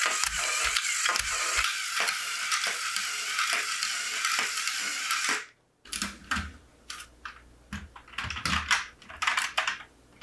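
LEGO Power Functions motors running the domino-laying machine: a steady mechanical whir of plastic gears with regular clicking from the indexing mechanism, about three clicks a second. It cuts off abruptly about five and a half seconds in. Scattered plastic clicks and knocks follow as the LEGO machine is handled.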